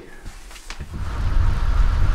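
A quiet room briefly, then a steady rushing noise with a heavy low rumble sets in about a second in: wind buffeting the camera microphone and tyre noise from a bicycle riding on a paved path.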